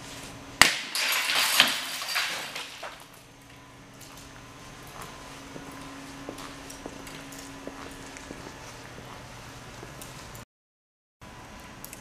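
A thrown rock hits a tempered glass basketball backboard with a sharp crack, and the glass shatters into tiny pieces that pour down in a crashing, tinkling rush lasting about two seconds. Scattered small clinks of falling fragments follow.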